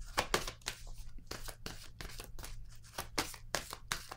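Tarot cards being handled and shuffled by hand: a quick, irregular series of snaps and rustles.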